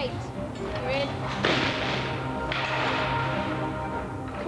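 Background music with a steady low drone, and a short burst of hiss that starts suddenly about a second and a half in and cuts off about a second later. A brief shout is heard near the start.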